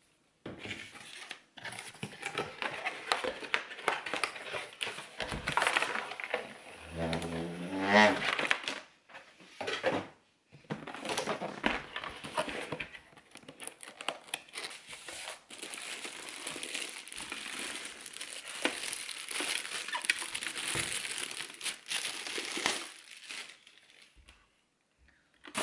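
Plastic packaging bags crinkling and rustling as a boxed blender is unpacked, with a brief rising squeak about seven or eight seconds in.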